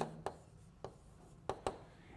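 Chalk on a blackboard: a few short, faint taps as the last strokes are written.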